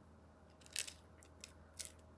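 Close-miked bites into a crisp pepperoni pizza crust: three short crunches, the loudest a little under a second in, a smaller one about halfway and another near the end.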